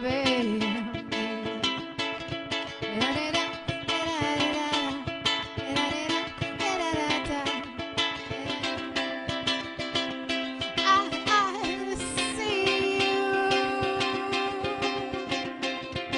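Ukulele strummed in a steady rhythm, with a woman singing along; the voice makes gliding, bending notes in the first half and holds longer notes in the second.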